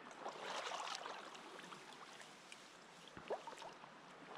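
Faint rustling and footsteps through tall tussock grass, loudest about half a second to a second in, with a single click a little past three seconds.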